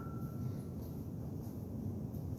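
Quiet room noise: a steady low rumble, with a faint high ring fading out within the first second.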